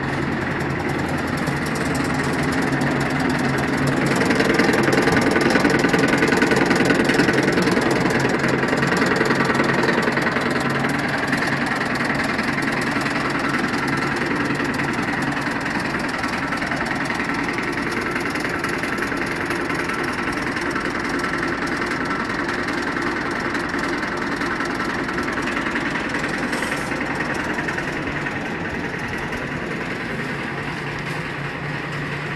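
Single-tube fabric reversing machine running: a steady mechanical hum, a little louder from about four to ten seconds in.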